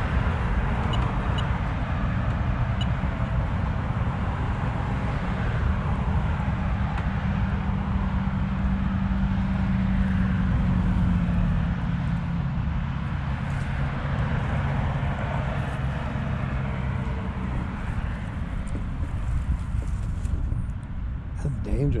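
Road traffic: cars passing on a busy multi-lane road, a steady rush of tyres and engines with a low hum that swells in the middle stretch.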